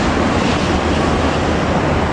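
Steady rushing noise of a Jakarta–Bandung high-speed electric train (KCIC400AF EMU) running past at speed, heard from a distance.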